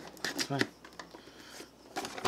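Paperboard toy box being opened by hand: the tuck flap is pried up and the box handled, giving a few light clicks and scrapes of cardboard.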